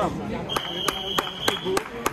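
A referee's whistle blown once, a steady high note held for just over a second, stopping the wrestling action. Rhythmic clapping runs under it at about three claps a second.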